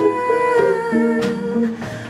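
Small live band playing: electric guitars and a drum kit under long held melody notes that step from pitch to pitch. The music thins and gets quieter near the end.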